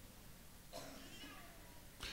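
Near silence: room tone in a pause of the speech, with a faint short wavering cry about three-quarters of a second in.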